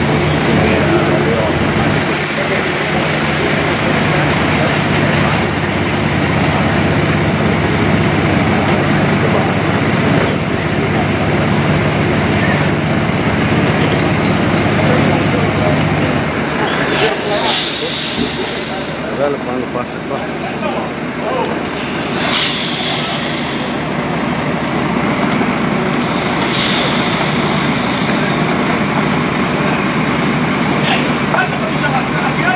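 Heavy diesel engine of a heavy-haul tractor unit running steadily as the oversized transport creeps along. Later the engine is fainter, under outdoor background noise with voices, and three short hisses occur several seconds apart.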